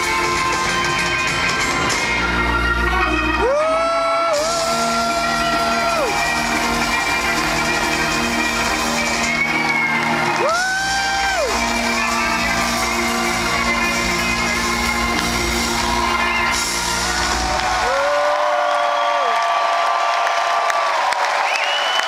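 Live electric band with guitars, drums and keyboard playing a song, recorded from the crowd in a large hall. The band stops about eighteen seconds in, leaving crowd whoops and cheers.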